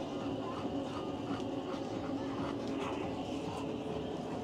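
Bulldog panting from the heat, a quick breathy rhythm of about two to three breaths a second over a steady low rumble.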